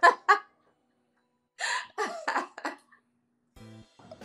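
Laughter in short breathy bursts, a pause of about a second, then a second run of laughs. Near the end a brief music cue begins.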